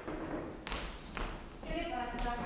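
A couple of dull thuds, then a person's voice holding one drawn-out note near the end.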